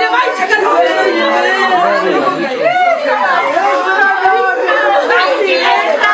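Several people's voices overlapping at once, talking and calling out over one another in agitated chatter.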